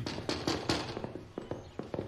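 Someone pounding hard on a door with a fist, a quick, uneven run of knocks.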